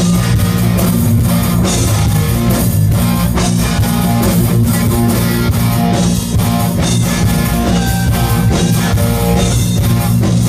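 Hard rock band playing live and loud: distorted electric guitars, bass guitar and a drum kit keep up a steady driving beat.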